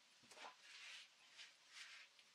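Faint scuffs and scrapes of firewood and sawdust being handled, a few short ones, with the chainsaw silent.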